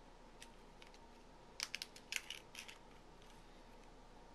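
A few light, sharp clicks and crackles of a small plastic minifigure packet being handled and set down on a wooden table, with a quick cluster of them in the middle.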